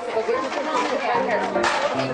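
Young children chattering, many voices overlapping at once in a classroom.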